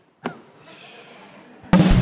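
A short click, then faint hiss, then near the end a sudden loud drum-kit hit from the studio band, a low thud with a bright crash.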